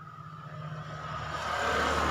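A road vehicle passing by, its engine rumble and road noise swelling steadily to a peak near the end.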